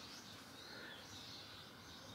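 Near silence: room tone with distant birds chirping outside.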